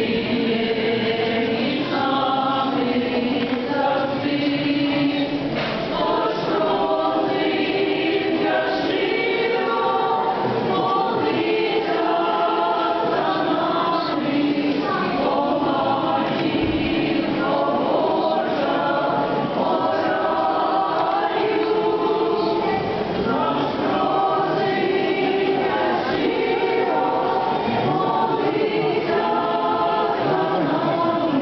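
Many voices singing a hymn together in slow, sustained phrases without a break.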